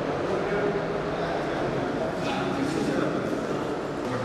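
Several people talking at once: indistinct conversation and chatter, with no one voice standing out.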